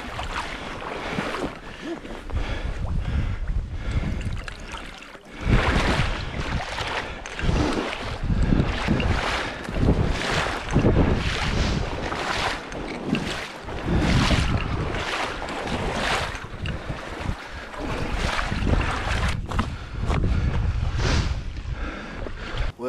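Gusty wind buffeting the microphone, a heavy low rumble that surges and eases every second or two.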